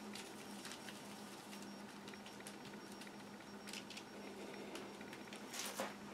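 Faint brushing and light tapping of a flat paintbrush working acrylic paint into matte medium on a foil-covered palette, with a few soft clicks of the brush on the foil. A steady low hum sits underneath.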